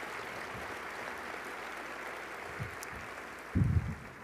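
Audience applause in a large hall, steady throughout, with a brief low thump near the end.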